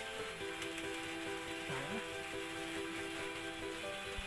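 Quiet background music with long held notes over a steady hiss.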